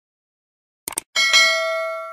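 YouTube subscribe-button animation sound effect: a quick double mouse click about a second in, then a bright notification-bell ding that rings on and slowly fades.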